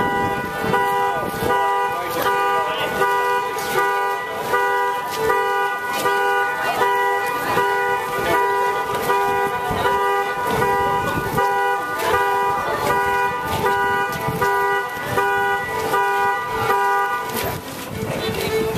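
Solo fiddle playing a dance tune in a steady rhythm, its notes held long over a sustained drone-like pitch.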